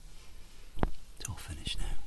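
A man's soft, whispered speech, with one short sharp tap a little under a second in.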